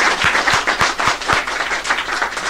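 A small group of people clapping by hand, applause at the end of a sung ballad.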